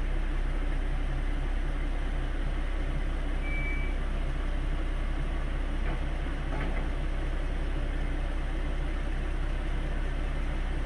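2011 Ford Mustang's engine idling steadily as the car is brought up to its parking spot, a low, even hum with no change in pitch.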